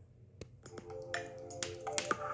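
A film trailer's opening soundtrack starting up: low held tones come in about half a second in, with several sharp clicks scattered through.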